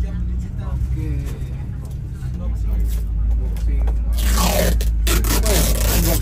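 Heavy diesel bus engine running with a low, steady rumble. About four seconds in comes a loud hiss lasting about a second.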